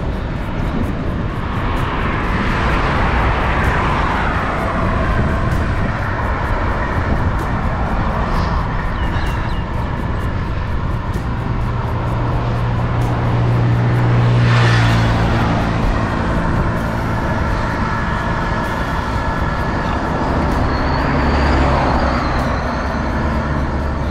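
Motor vehicles passing on the road one after another, each swelling and fading, the loudest about halfway through with a low engine drone; wind buffeting the microphone underneath.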